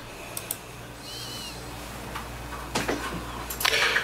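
A few sharp computer mouse clicks, a pair about half a second in and more near three seconds, over a steady low hum. There is a short faint chirp about a second in and a brief louder noise just before the end.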